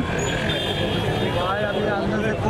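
A man speaking in an interview, over steady outdoor background noise with a vehicle-like rumble.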